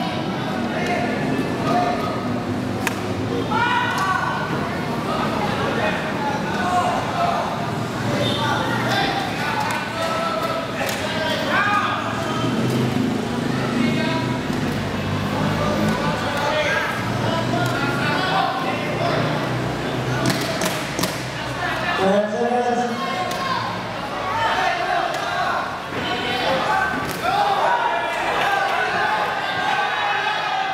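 Spectators and cornermen shouting and calling out throughout a kickboxing bout, with occasional sharp thuds.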